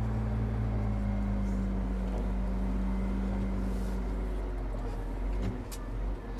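Valtra tractor's diesel engine running steadily, heard from inside the cab as the tractor reverses into a field corner. A higher hum in the drone fades out about two-thirds of the way through, and there is a faint click near the end.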